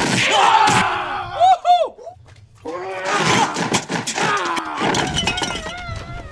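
Two men yelling and shouting as they scuffle, in loud, swooping cries. The noise breaks off briefly about two seconds in, then the yelling starts again.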